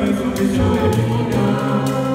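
Small mixed a cappella group of five voices singing a gospel song in harmony, with a deep held bass line under the upper parts. A beaded gourd shaker keeps a steady beat over the voices.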